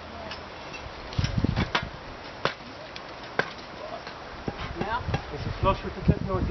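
Metal tunnel-frame tubing knocking and clicking as a long steel crossbar is slid along the hoops: a few sharp, separate knocks in the first half, with faint voices near the end.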